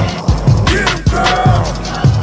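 Hip hop beat with no vocals: deep kick drums and sharp snare hits, with a short gliding higher melodic figure about halfway through.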